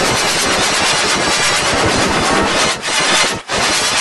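Loud, harsh distorted noise from a heavily processed logo-remix audio effect, a dense crackle spread across all pitches, dropping out briefly twice near the end.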